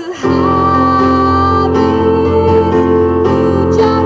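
Woman singing live while accompanying herself on an electric keyboard. After a brief drop at the very start, she holds one long sung note over sustained piano chords.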